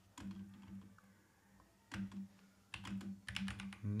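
Typing on a computer keyboard: short runs of keystrokes, a pause of over a second, then a quicker run of keys.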